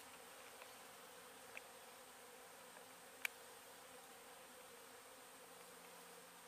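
Faint steady buzzing of honeybees, with one sharp click a little past three seconds in.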